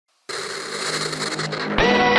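Electronic opening theme music for a TV sports bulletin: after a moment of silence a noisy swell builds, then just before the end a hit lands and the music comes in louder with sustained tones.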